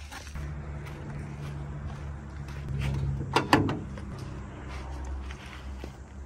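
Porsche 944 hood being unlatched and lifted open: two sharp clacks close together a little past halfway, over a steady low hum.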